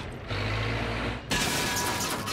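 Cartoon mechanical sound effect of a crane machine grinding for about a second, then a sudden louder burst as its arm flings a junked car body into the air.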